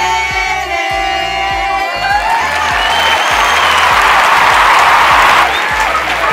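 Group singing that ends about two seconds in, followed by a few seconds of clapping and cheering. A background music track with a steady beat plays throughout.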